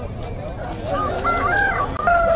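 A rooster crowing once, starting about a second in and lasting just under a second.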